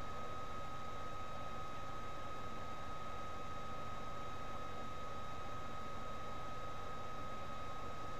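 Steady background hiss with a constant high-pitched whine under it: the noise floor of a headset-microphone webcam recording, with no other sound.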